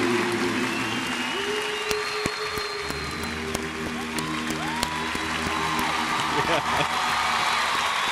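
Live band holding long sustained closing chords, moving to a fuller, deeper chord about three seconds in, while a large concert audience applauds.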